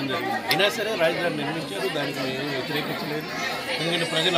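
A man speaking, with other voices chattering behind him.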